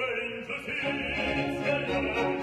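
Operatic singing with orchestral accompaniment: a trained voice sings over the orchestra in a comic-opera duet.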